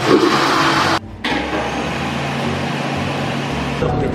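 Toilet flushing: a loud rush of water, cut off sharply about a second in, then a steady rushing noise with a low hum.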